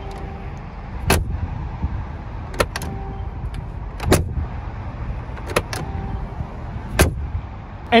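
2020 Mercedes-AMG G63's door being opened and shut, its old-style mechanical latch giving a sharp, solid click about every second and a half. This is the latch sound kept from the original military G-Wagon, called very satisfying.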